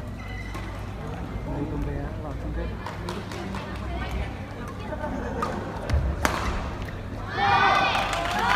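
Badminton rally: sharp racket strikes on the shuttlecock over a murmur of spectators' voices, with the hardest hit about six seconds in. A loud shout of voices follows near the end as the point is won.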